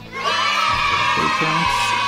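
An edited-in sound clip of voices shouting and whooping over music, starting about a quarter second in and running on steadily.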